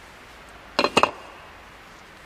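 Two sharp metallic clinks in quick succession about a second in: small metal engine parts and tools being handled and set down on a workbench.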